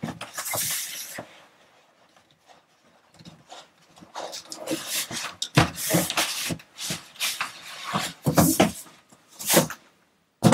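Cardboard scraping and rustling as an outer freight carton is slid off a heavy inner cardboard box. There is a hiss of sliding cardboard at first, a short pause, then an irregular run of scuffs and bumps as the box is shifted and lifted.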